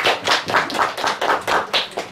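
A small group of people clapping their hands in quick, even applause, about five or six claps a second, that stops near the end.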